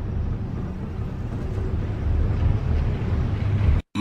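A steady low rumbling noise that cuts off abruptly just before the end.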